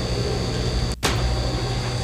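Steady low hum and hiss from the audio track of old half-inch reel-to-reel videotape, with a faint high whine. About a second in the sound cuts out for an instant, at an edit where the recording was stopped and restarted.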